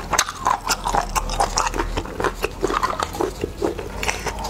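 Close-miked eating of spicy river snails: wet chewing and smacking with quick mouth clicks, several a second.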